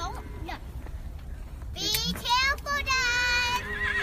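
Young girls' high-pitched voices calling out and squealing, with one long held note about three seconds in.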